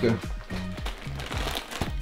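Background music with light rustling and a few short clicks of a plastic shopping bag being handled.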